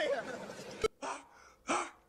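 A voice trailing off, cut by a sharp click, then two short, sharp breathy gasps about half a second apart.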